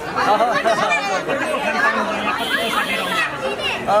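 Speech: a man talking into press microphones over the chatter of a surrounding crowd.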